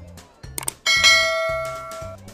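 A single bell strike about a second in, its several tones ringing on and fading over about a second, over background music with a steady beat of about two pulses a second.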